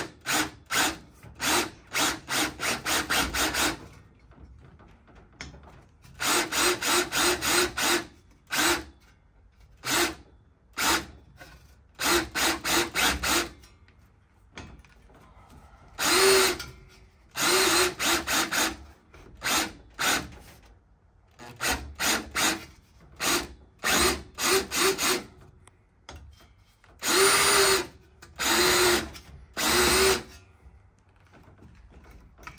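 Schwartmanns Beady cordless beading machine, driven by a Makita drill motor, rolling a swage into 0.8 mm galvanized sheet-steel band in short trigger pulses. The motor spins up and stops again and again: a quick string of pulses in the first few seconds, then small groups of pulses with pauses between them.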